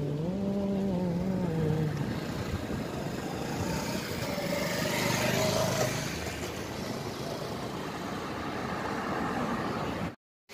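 Street traffic: cars driving past close by, with one engine note rising and falling in the first two seconds and another vehicle passing, louder, around the middle.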